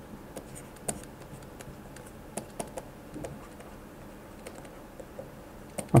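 Stylus on a pen tablet tapping and clicking as handwriting is written: faint, irregular clicks about every half second to second, with no voice.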